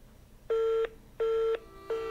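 Telephone busy signal: two short beeps of one steady tone, each about a third of a second long with equal gaps between them, heard over a phone's speaker, with a third beep starting near the end. It means the call has ended or isn't getting through.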